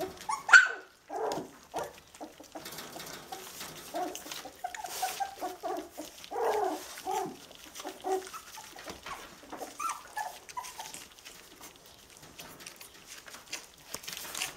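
Four-week-old schnauzer puppies whimpering and yipping: one sharp falling yelp about half a second in, the loudest sound, then a run of short whines in the middle. Small clicks and rustles of the puppies at their food bowls and on newspaper run underneath.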